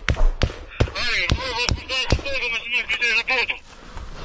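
Close-range gunfire in a trench fight: single shots cracking at irregular intervals, about two a second, with a man's voice shouting over them from about a second in until near the end.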